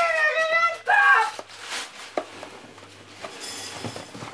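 A young child's high-pitched voice calling out for about a second, then a quieter stretch of scattered faint clicks and knocks.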